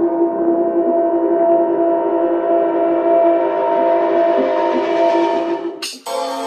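Breakdown in a dark techno mix: a held synthesizer drone chord with no kick drum, under a hiss that rises steadily in pitch. It cuts off sharply just before the end as a new chord comes in.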